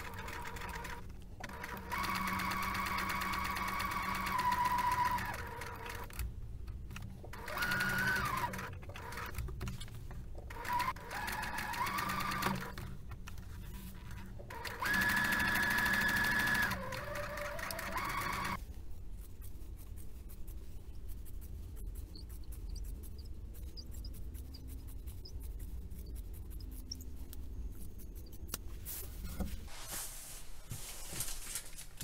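Domestic electric sewing machine stitching a collar seam in four short runs of a few seconds each, its motor whine rising and falling in pitch as it speeds up and slows down between runs. It falls quiet in the last third.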